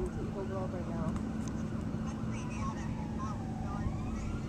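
Steady low outdoor rumble with faint voices. Near the end a distant emergency-vehicle siren starts a wail, rising in pitch.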